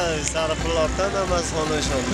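A man's voice talking, over a low rumble of street traffic.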